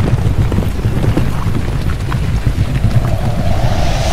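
Sound effects of an animated TV ad-break bumper: a dense low rumble with wind-like rushing, and a steady hum joining near the end.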